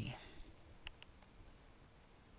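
Faint stylus taps on a tablet screen while handwriting digits: a handful of light, separate clicks in the first second and a half.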